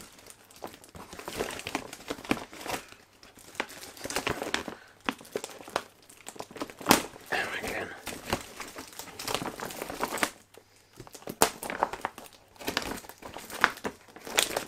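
A gift bag and its wrapping crinkling and rustling as it is handled and cut open with scissors, with scattered sharp snips and clicks.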